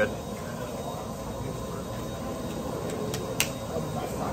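Steady backstage room murmur of distant voices and low hum, with a couple of light clicks about three seconds in.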